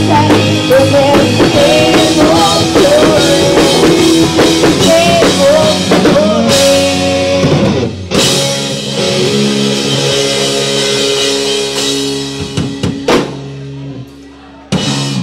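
Live pop-rock band with female lead vocals, electric guitars, bass, drum kit and Korg keyboard. For the first half she sings over the full band. After a short break about eight seconds in, the band holds sustained chords toward the end of the song, ending on a final hit about a second before the end.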